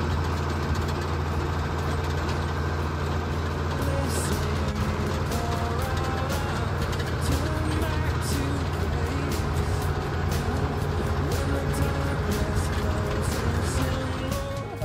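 Tractor engine running steadily while pulling a manure spreader as it throws manure across the field, with scattered short clicks and clatter from the spreader. Faint background music plays underneath.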